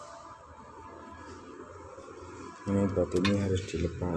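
Faint background noise, then a man's voice speaking about two-thirds of the way in.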